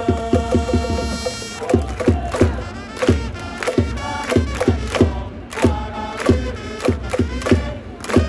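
A baseball cheering section's trumpets and drums playing a player's cheer song (ouenka), the drum beating about three strokes a second under the trumpet melody. Fans chant along and clap in time.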